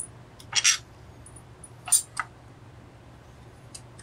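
Four short clicks and clinks at irregular spacing, made by hands working the starter cover off a Homelite Super XL chainsaw on a workbench. The first, about half a second in, is slightly longer, like a scrape.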